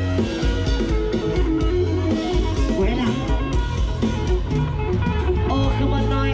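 Live rock band playing loudly through a stage PA, with electric guitar lines over a heavy bass and drums.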